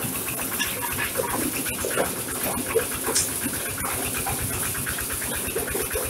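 Corn sheller for unhusked corn running under load, threshing cobs fed in with their husks. It makes a steady mechanical din with a dense, irregular rattle of kernels and cobs.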